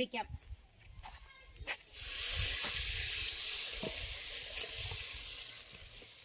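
Curry masala sizzling in hot oil in an aluminium pot over a wood fire: a steady hiss that starts suddenly about two seconds in and slowly fades. A couple of light knocks come before it.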